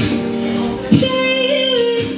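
Live music: a woman singing into a microphone over a sustained backing of several held tones, her note wavering slightly from about a second in. A short sharp hit falls about a second in.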